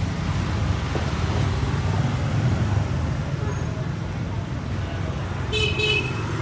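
Honda SH Mode scooter engine idling steadily on its stand. A short high-pitched beep sounds near the end.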